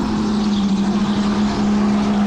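Indoor racing go-kart running at speed, heard from the kart itself: one steady motor tone over a haze of wind and track noise.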